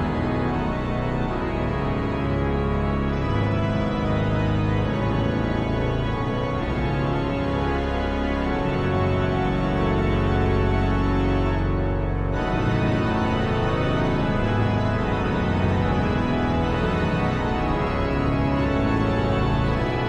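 Virtual pipe organ sampled from the Nancy Cathedral organ, played in full held chords on the manuals over a pedal bass line. The chords change every second or so.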